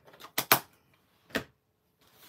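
Sharp clicks of a plastic ink pad case being handled and set down on a craft table: two quick clicks about half a second in and one more near the middle.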